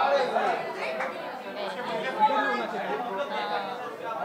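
Several people talking over one another: indistinct crowd chatter in a large indoor room.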